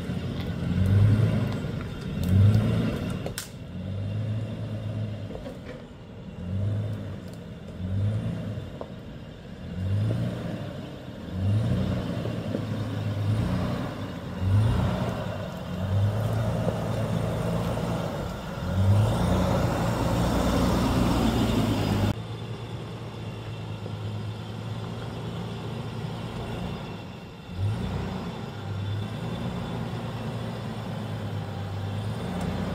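Nissan Patrol Y61 engine being throttled up and down in short repeated pulses, about once a second, as the SUV crawls over rough off-road ground. A rushing noise builds late in the first part and cuts off suddenly, after which the engine runs more steadily with a couple more throttle pulses near the end.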